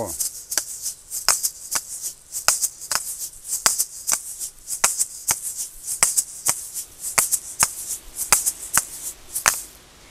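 Asalatos, pairs of seed-filled shaker balls joined by a cord, played with both hands. The balls knock together in sharp clicks, about two a second, over a steady seed rattle as they spin, swing and shake between clicks. The playing stops just before the end.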